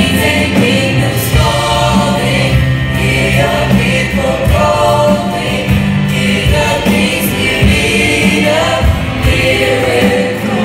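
Youth choir singing a worship song with live band accompaniment, sustained loud chords under the massed voices.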